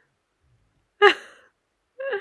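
A moment of quiet, then about a second in a person's short breathy exhale: a soft, sigh-like laugh. A second breath begins right at the end.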